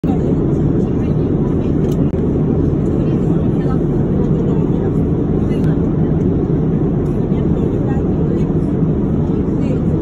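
Airliner cabin noise in flight: a steady, low, even rumble of engine and airflow noise that does not change.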